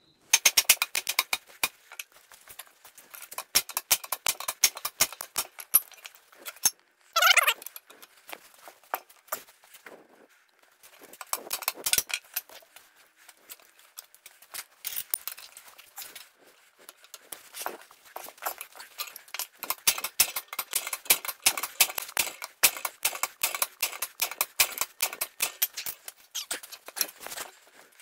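Steel bench vise being worked to clamp small hardened rebar slivers: rapid metallic clicking and rattling of the handle and jaws, with a brief falling squeak about seven seconds in.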